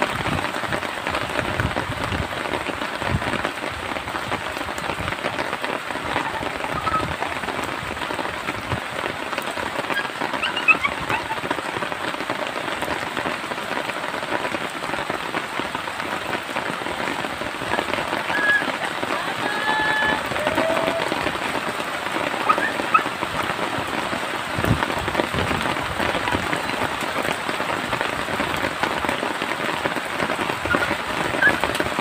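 Steady patter like rain, a dense even crackle, with a few brief high chirps in the middle stretch.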